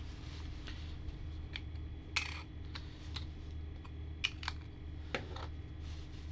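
About ten small clicks and taps, spaced irregularly, with one brief scrape about two seconds in: a Lumix lens being twisted off an Olympus OM-D E-M5 Mark III mirrorless body and set down on a table with its lens cap.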